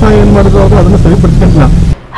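A man talking over a loud, steady low rumble, with a clean woman's voice taking over abruptly at the very end.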